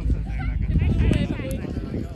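A person's high-pitched, wavering shout or call, starting about half a second in and lasting about a second, over a steady low rumble.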